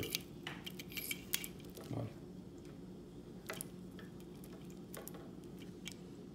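A few scattered light clicks and taps of plastic connectors and wires being handled on a hard tabletop: the cigarette-lighter plug lead and small driver box of an LED strip kit. A steady low hum runs underneath.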